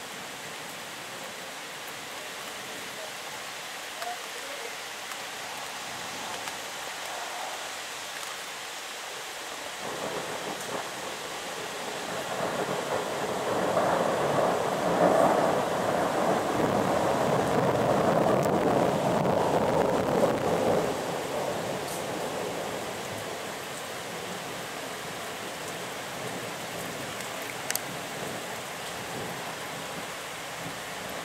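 Steady rain falling on trees. A long roll of thunder builds about a third of the way in, holds loudest for several seconds and dies away about two-thirds through. There is a single sharp tick near the end.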